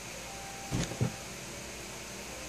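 Two light knocks about a third of a second apart, near the middle, from hands handling a drawing board, over a steady faint room hum.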